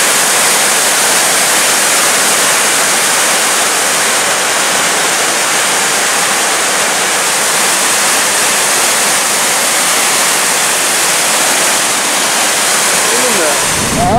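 Water spilling over a dam's spillway and churning into the pool below: a loud, steady rush.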